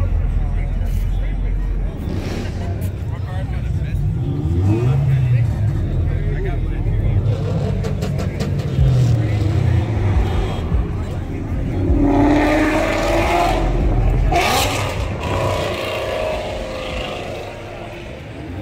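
A car engine running in the background with a low rumble, revved up and back down a couple of times, while people talk nearby, most clearly about two-thirds of the way in.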